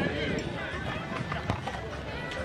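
Several people talking at once, their voices overlapping, with one sharp click about one and a half seconds in.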